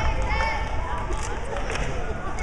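Voices chattering in a large arena, with a few soft thumps in the second half from a gymnast's hands and feet striking a spring floor as she tumbles.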